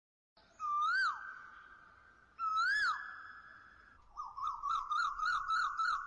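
Whistled bird-call sound effect: two single rising-then-falling whistles, each with a lingering tail, then a quick warbling run of chirps at about four a second.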